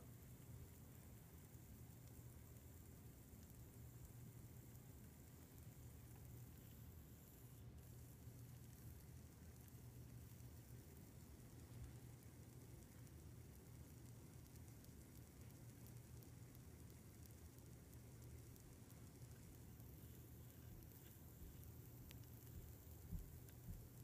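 Near silence, with a faint steady low hum and a faint fizz from the salt-and-vinegar electrolyte bubbling under the cotton pad as current etches the aluminium plate.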